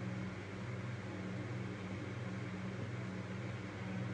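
Steady low hum with an even background hiss, unchanging throughout, with no distinct clicks or tones standing out.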